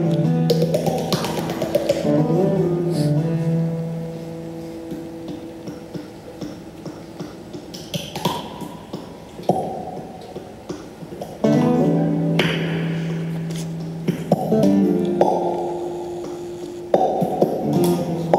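Nylon-string classical guitar chords, struck and left to ring, with quick clicks and pops of mouth percussion made with a hand cupped at the mouth; the guitar falls quieter in the middle, where the clicks carry on alone, and returns with fresh chords near the end.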